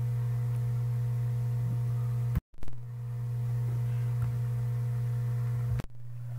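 Steady low hum with no speech, broken by two brief drop-outs to dead silence, one about two and a half seconds in and one just before the end.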